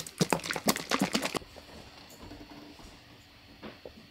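Bottle of thick protein drink shaken hard: about ten quick sloshing strokes over the first second and a half, then still, with a couple of light clicks of the bottle being handled near the end.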